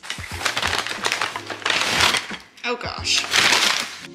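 Rustling of a paper grocery bag and crinkling of a plastic meat package as they are handled and pulled apart, in loud, uneven bursts.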